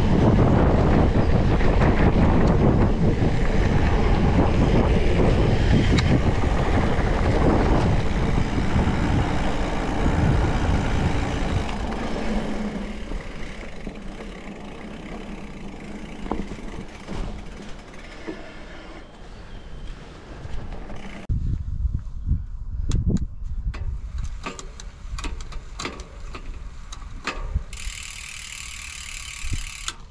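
Wind buffeting the microphone and the tyres rumbling over a dusty dirt trail as an electric mountain bike descends, loud at first and fading about twelve seconds in. In the last part, scattered sharp clicks and knocks.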